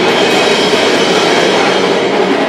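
A hardcore punk band playing live: a loud, dense wall of distorted electric guitar and drums with no breaks.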